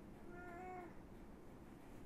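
A faint, single pitched call lasting a little over half a second, starting just after the beginning, over quiet room tone.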